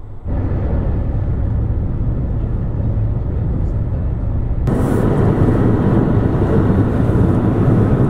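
Steady road and engine rumble of a car travelling at highway speed, heard inside the moving vehicle. About halfway through it becomes louder and hissier.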